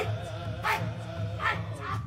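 Background music: male chanting voices over a steady drum beat.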